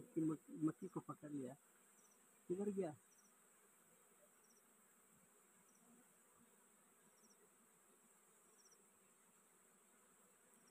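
Faint steady buzzing of honeybees clustered on a small exposed honeycomb, with faint high chirps repeating about once a second.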